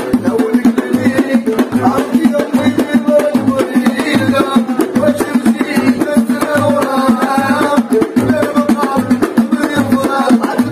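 Moroccan watra folk music: a group of men singing to hand-held frame drums and goblet drums beating a steady, driving rhythm.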